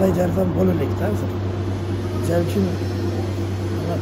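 A man talking over a steady low hum.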